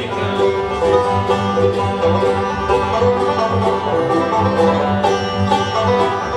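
Instrumental break of a gospel song with no singing: acoustic string-band music with plucked strings over a steady bass pulse.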